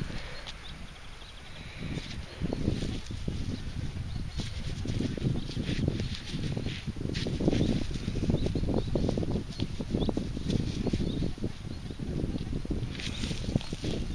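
Rustling and soft scraping of gloved fingers handling a small dug-up gas tap close to the microphone, with irregular light knocks as it is worked at to turn its key.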